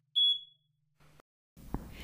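A ceiling-mounted smoke alarm gives one short, high-pitched beep as its button is pressed to test it.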